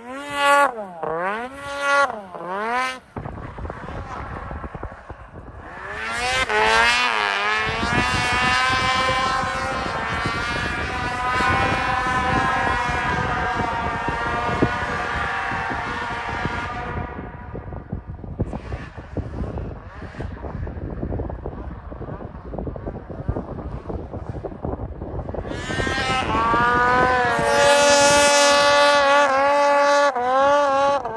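Two-stroke snowmobile engines revving hard. Quick up-and-down rev blips come in the first few seconds. Then a long climb to a high-pitched full-throttle whine holds for about ten seconds and fades away, and another run climbs to high revs near the end.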